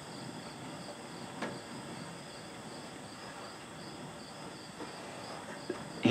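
Crickets chirping faintly in a steady, even rhythm of about three high pulses a second. A faint single tap about one and a half seconds in.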